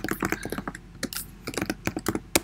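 Typing on a computer keyboard: a quick run of keystrokes, about four a second, with a short pause partway through.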